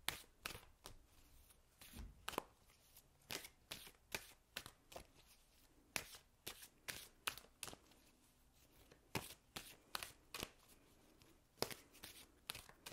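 A deck of oracle cards being shuffled by hand: faint, irregular clicks and slides of the cards, a few each second.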